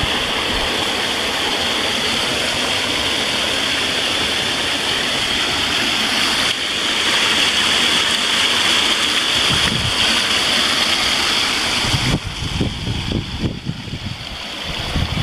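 Small waterfall in a rain-swollen stream pouring into a pool: a loud, steady rush of falling water. About twelve seconds in it drops to a gentler, uneven gurgling of moving water.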